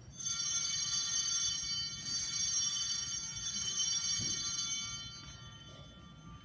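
A set of small altar (sanctus) bells shaken three times in quick succession, ringing brightly and fading away after the third ring. They are rung to mark the elevation of the consecrated host and chalice.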